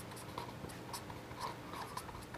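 Marker pen writing letters on paper: a quick series of faint short strokes.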